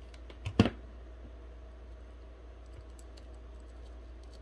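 Two quick knocks of a hard object set down on a craft table about half a second in, the second much louder, then faint light clicks of hands handling stones and craft pieces over a low steady hum.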